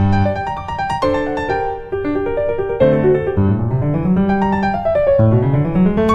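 Background piano music: struck piano notes, with two quick rising runs of notes in the second half.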